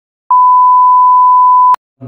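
A single steady electronic beep at one fixed pitch, the classic bleep sound effect, lasting about a second and a half; it starts a moment in and stops abruptly with a click.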